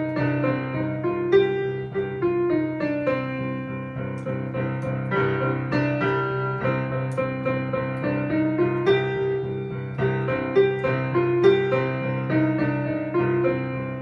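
Digital piano being played: a continuous melody of short notes stepping up and down over a steady low note, with no pauses.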